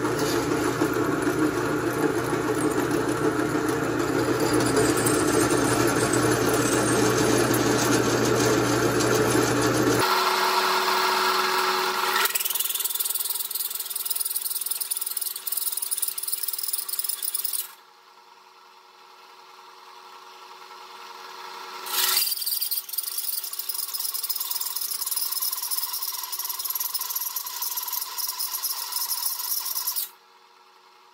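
Drill press driving a hole saw through eighth-inch steel plate, a steady high cutting sound. It stops abruptly about ten seconds in and again for a few seconds in the middle, then resumes as the next holes are cut.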